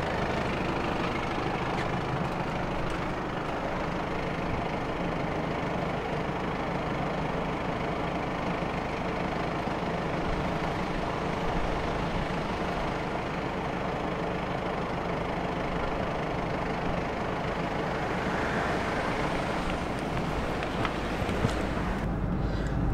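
A 2013 Audi A3's engine idling steadily, with an even hiss over it.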